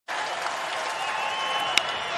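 Ballpark crowd noise from a full stadium. Near the end comes a single sharp crack: the bat meeting the pitch on the game-winning fly ball to left.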